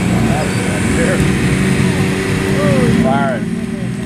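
Demolition-derby cars' engines running steadily as they drive around the field, with onlookers' voices calling over them.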